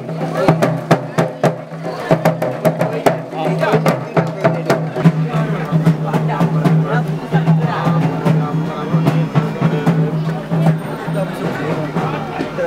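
Music with fast drum and wood-block strikes over a steady low drone, with voices mixed in.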